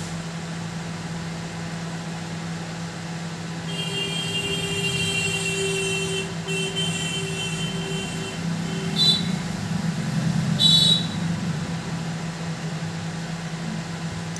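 A steady low hum, joined about four seconds in by a high-pitched squealing whine that lasts about four seconds, then two short shrill squeals a little under two seconds apart, the second the loudest sound here.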